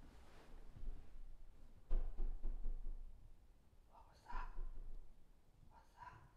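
A sudden run of several quick knocks or taps, starting about two seconds in and lasting under a second, that sounds to the listeners like a ball bouncing; a second, shorter noise follows just after four seconds.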